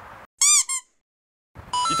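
A cartoon-style sound effect: two quick, loud, high-pitched squeaky chirps, each bending up and then down in pitch. The sound cuts to dead silence just before and after them.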